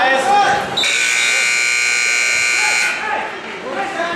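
Electronic scoreboard buzzer sounding one steady, reedy tone for about two seconds, starting about a second in and cutting off suddenly, with voices around it.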